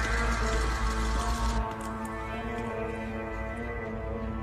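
Film score music with long held notes. A deep rumble and hiss under it drop away about a second and a half in, leaving the sustained tones.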